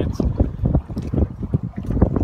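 Wind buffeting the microphone in uneven, rumbling gusts.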